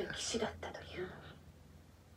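A man's faint, breathy speech trailing off and fading out within about a second and a half, leaving near-silent room tone with a low steady hum.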